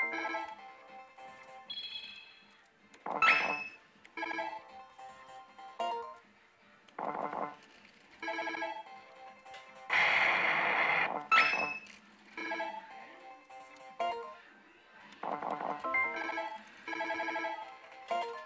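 Pachislot machine (Millionگod Kamigami no Gaisen) electronic sound effects during play: short bright tonal jingles and beeps that recur every second or two as the games run. About ten seconds in, a louder noisy burst lasting about a second and a half, the loudest moment, goes with a flash effect on the screen.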